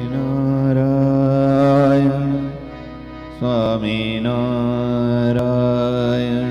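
A man's voice chanting a devotional mantra in long, held notes over a steady sustained musical accompaniment. The sound dips briefly about two and a half seconds in, then a new phrase begins about a second later.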